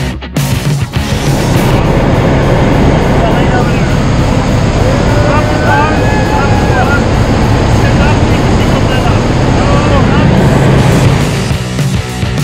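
Loud, steady cabin noise of a skydiving jump plane in flight, engine and rushing air, with a woman's voice calling out over it about halfway through. Rock music plays in the first second and comes back near the end.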